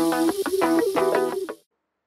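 Background music: a riff of short, repeated pitched notes with a steady beat, which cuts off about one and a half seconds in.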